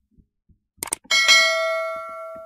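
Sound effects of an animated subscribe button: a quick mouse click just before a second in, then a bright bell notification ding that rings on and slowly fades.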